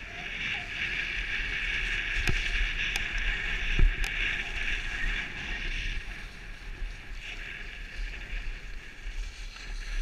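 Skis sliding and carving on packed snow: a steady scraping hiss, strongest over the first six seconds and easing after. A few sharp clicks and a thud about four seconds in.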